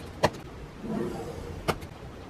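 Two sharp taps about a second and a half apart as a steel ruler is set down on cardstock, with a pencil scratching a line along the ruler between them.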